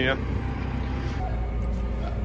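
JCB telehandler's diesel engine running at a steady idle, a low hum.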